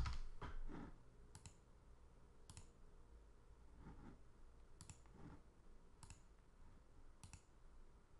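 A few computer keyboard keystrokes in the first second, then faint single computer mouse clicks about a second apart, five or so in all.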